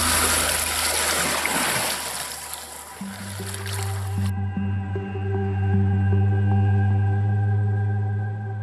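Rushing floodwater and wind noise on a body-worn camera microphone for about the first four seconds, which cuts off suddenly, leaving a steady ambient music drone of low held tones.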